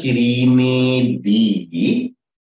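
A man's voice speaking in long, drawn-out syllables, with two short breaks near the middle and end.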